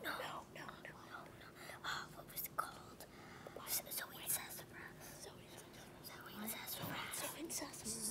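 Several children whispering to each other, conferring quietly over a quiz answer.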